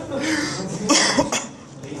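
A person coughing: two short, sharp coughs about a second in.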